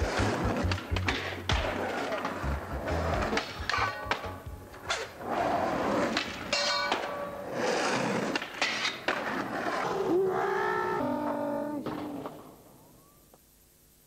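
Skateboard clatter of board pops, landings and rolling wheels over a music soundtrack. Everything fades out about twelve seconds in.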